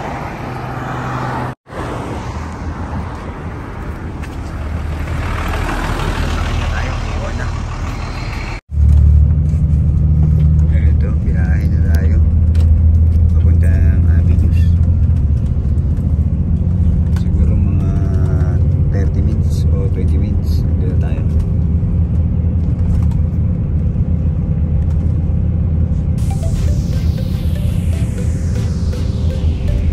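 Road traffic with a car driving past. After a cut about nine seconds in, the steady low engine rumble of a double-decker bus, heard from inside the cabin while it rides along.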